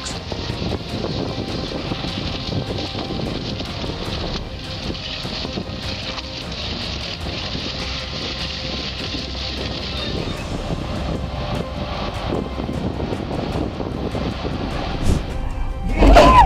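Two-stroke diesel engine of an ST44 freight locomotive running with a steady drone, under background music. A brief swell in loudness near the end.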